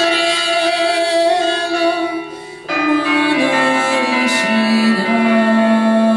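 A woman sings a Lithuanian folk song, accompanied by an electronic carillon keyboard sounding bell tones. A held note gives way to a short dip about two and a half seconds in, then a new phrase that steps down in pitch.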